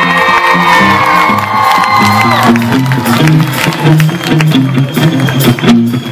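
Live rock band playing: a stepping bass line and drums, with a long high sliding tone held over the first two and a half seconds.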